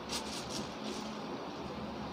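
A few soft scratchy rustles in the first half-second, then a steady low background hiss.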